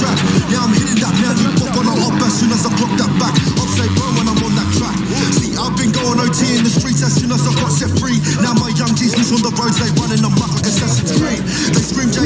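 Drill rap track playing: rapping over a beat with a deep, repeating bass line.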